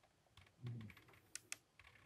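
Faint crisp clicks of a cat starting to eat dry kibble from a bowl, kibble crunching and rattling against the dish in the second half, after a short low sound about two-thirds of a second in.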